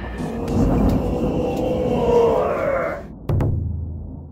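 Channel intro sound effects: a swelling whoosh that rises in pitch, then a sudden thunderclap-like crash a little over three seconds in, with a low rumble fading away.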